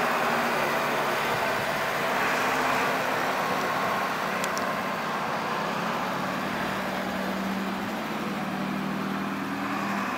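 Bus engine running steadily as the bus drives slowly and turns across the lot, a low even hum under general traffic noise.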